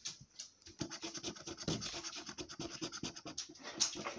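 A coin scratching the coating off a scratchcard's play area: a fast run of short, repeated scratching strokes that starts about a second in.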